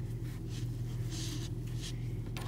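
Soft, scratchy rubbing of a crochet hook and acrylic yarn being worked into stitches, in a few short strokes, over a steady low electrical hum.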